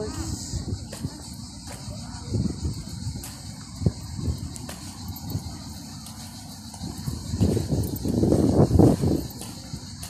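Outdoor ambience picked up by a handheld phone microphone while walking: irregular low rumbling gusts and handling noise, loudest near the end, over a steady high hiss.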